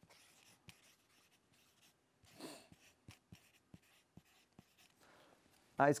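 Pen writing on a sheet of paper held on a clipboard: faint, irregular scratches and small ticks of the pen tip, with a brief soft rustle about two and a half seconds in.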